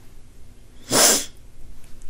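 A single short, sharp burst of breath noise from a woman, about a second in, lasting under half a second.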